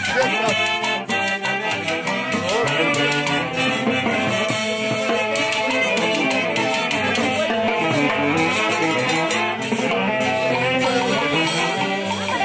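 Andean festival orquesta playing a lively dance tune with a steady beat.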